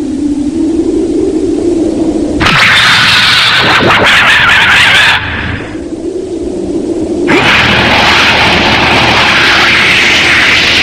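Tokusatsu film sound effects: a low wavering electronic hum, broken about two seconds in by a loud hissing blast with a swooping whistle through it, then the hum again. From about seven seconds a loud steady rushing hiss sets in, the sound of a spraying energy beam.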